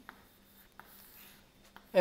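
Chalk writing on a blackboard: a few faint taps and scratches as a number is written and circled.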